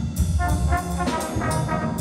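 School jazz big band playing, its trombones and trumpets sounding chords over drum kit cymbals keeping time.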